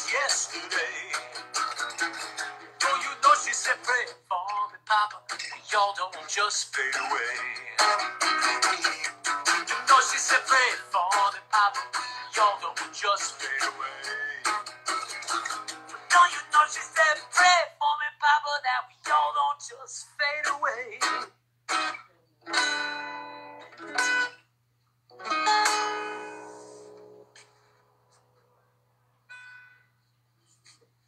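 Acoustic guitar strummed, with a voice singing along through roughly the first two-thirds. The playing then thins to separate chords and single notes, and a last strum rings out and fades a couple of seconds before the end.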